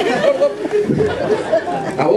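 Theatre audience chattering, many voices talking at once.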